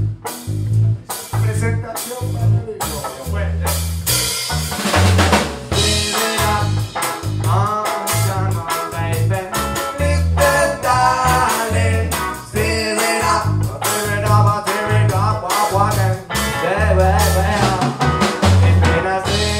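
Live rock band playing: drum kit, electric guitar and bass guitar, with a rapped or sung vocal into a microphone over a strong, steady bass rhythm.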